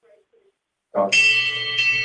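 Near silence for about a second, then a bell-like ringing of several steady high pitches comes in under a man's voice.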